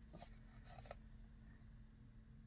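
Near silence: room tone with a faint steady low hum and a couple of faint brief ticks.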